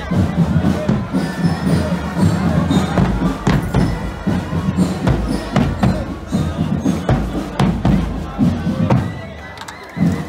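Marching drum band playing, with Ludwig marching bass drums and other percussion beating out a march amid a crowd's chatter and cheers. The playing quietens briefly near the end.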